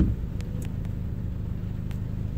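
Steady low-pitched rumble, of the kind a vehicle engine makes running at idle, with a few faint clicks.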